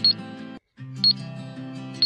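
Countdown timer ticking: a sharp, high tick once a second, two in all, over steady background music. The music cuts out for a split second a little past halfway.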